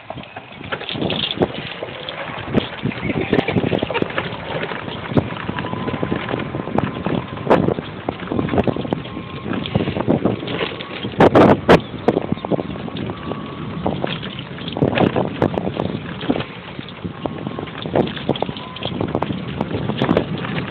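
Golf cart driving fast over a rough dirt trail: continuous rattling, knocking and jolting of the cart's body and load, with wind buffeting the microphone and a faint steady whine underneath. A burst of loud clattering jolts comes about eleven seconds in.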